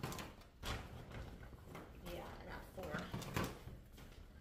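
Groceries being handled on a kitchen counter: cans and packages knocked and set down among rustling bags, several sharp knocks, with a short stretch of voice in the background.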